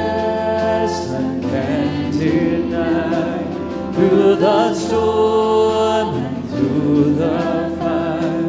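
A worship band performing a contemporary worship song, with several voices singing together in long held notes over instrumental accompaniment.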